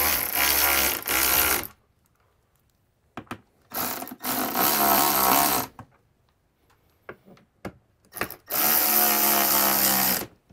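Cordless electric ratchet running in three spurts of about two seconds each, with near silence between, as it tightens the mounting bolts of a rooftop RV air conditioner.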